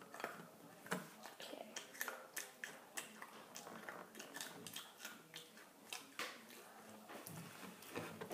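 Faint crunching of a person chewing a crisp snack: a run of small, irregular crackles and clicks.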